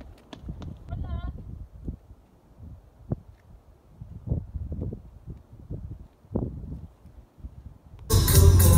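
Footsteps on rocky ground, a series of irregular steps, with a low rumble of wind or handling on the microphone.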